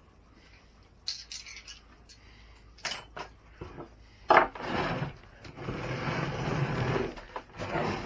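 Small metal hardware clinking as it is handled and set down, then a sharp clack a little past four seconds. After that come a few seconds of scraping and knocking as the plastic RC truck chassis is shifted and turned on the wooden bench.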